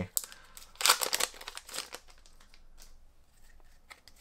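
Foil Pokémon Hidden Fates booster-pack wrapper crinkling and tearing, loudest about a second in, followed by softer rustles of the cards being handled.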